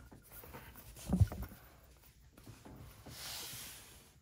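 Hands working a metal Poké Ball tin, pressing its button and gripping the shell while trying to open it: soft handling and rubbing noises, with a short low knock about a second in and a soft hiss near the end.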